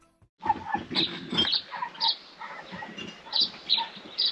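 Outdoor ambience with birds calling: short chirps repeating every half second or so, some high and some lower, over a light steady background noise.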